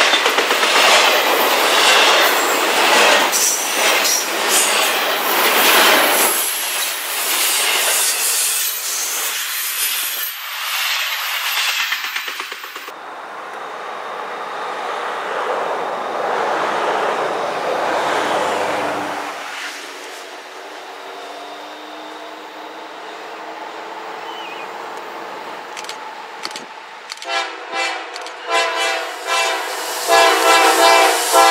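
Double-stack container train passing close, with steady wheel and rail noise and clacking over rail joints. After a cut, a freight train led by a GE ES44AH diesel approaches, its rumble building. Near the end the lead locomotive's multi-note horn sounds in a series of short blasts.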